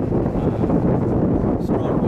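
Wind buffeting an outdoor microphone: a steady, loud low rumble.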